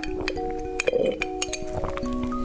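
Several sharp glass clinks, a straw knocking against glass test tubes, over background music with held notes.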